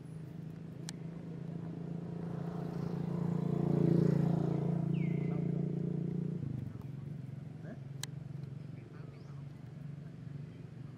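A motor vehicle's engine passing by, growing louder to a peak about four seconds in and then fading away. A sharp click sounds near the start and another near the end.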